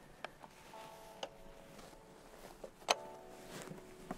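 A few sharp clicks and knocks, the loudest about three seconds in, from boots and hands on a helicopter's metal step and fuselage as someone climbs up onto it. Soft sustained background music notes enter about a second in.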